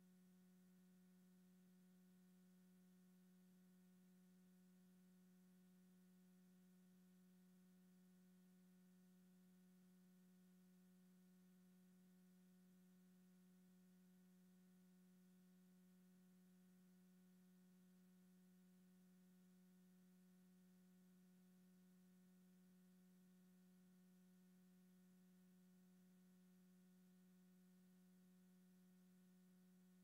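Near silence: a faint steady low hum with a few fainter overtones, unchanging throughout, with no music.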